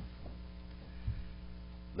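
Steady, faint electrical mains hum from the sound system, with a soft low thud about a second in.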